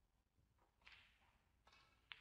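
Near silence: hushed room tone, with a faint short rustle-like noise about a second in and another softer one near the end.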